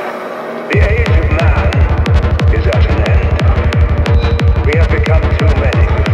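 Darkpsy trance track at 180 bpm: a short stretch of synth textures without bass, then, just under a second in, the kick drum and bassline drop back in, pounding about three beats a second with sharp hi-hat ticks.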